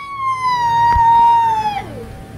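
A child's long, high-pitched shriek held on one pitch, sagging slightly lower and then dropping away near the end.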